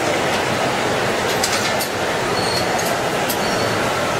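Steady roaring noise of a gas-fired glassblowing glory hole furnace and studio blowers, with a few faint short high pings.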